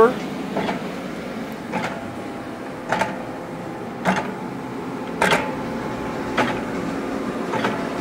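Vemag Robot 500 vacuum stuffer running: a steady machine hum with a sharp knock a little more often than once a second, the regular beat of its portioning cycle.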